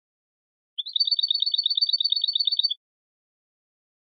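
A European goldfinch singing one rapid trill of high notes, about ten a second, alternating between two pitches; it starts just under a second in and stops before the three-second mark.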